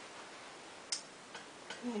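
A quiet room with one sharp, high click about a second in and a few fainter ticks after it, then a short laugh right at the end.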